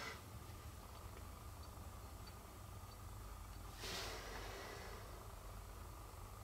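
Quiet room tone with a faint hum, and one brief soft rustle about four seconds in, typical of a hand handling a phone.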